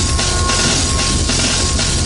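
Chairlift bull wheel and drive machinery running at the loading station: a steady mechanical noise with a steady high whine.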